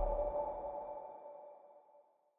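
Tail of an electronic logo sting: two steady chime-like tones ringing on and fading away over about a second and a half, with a low rumble dying out under them.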